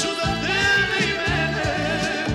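Balkan folk song: a male voice singing an ornamented, wavering melody over an accordion band with bass and a steady beat.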